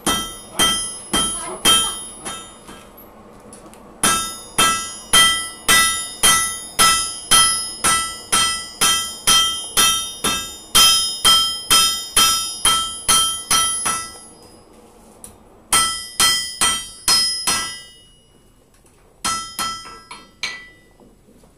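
Blacksmith's hammer striking hot iron on an anvil, each blow ringing. A few blows come first, then a steady run of about two blows a second for some ten seconds, a short pause, and another quick group of blows.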